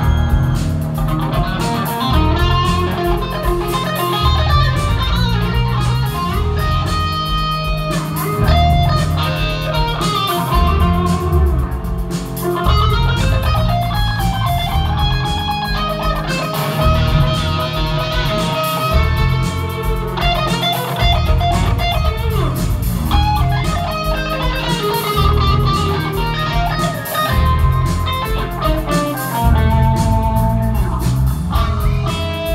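Live rock band with a sunburst Les Paul-style electric guitar playing lead lines, runs of changing notes over bass and drums.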